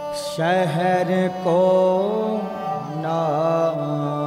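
Sikh kirtan: a male voice singing a shabad in long, gliding notes over a steady harmonium drone.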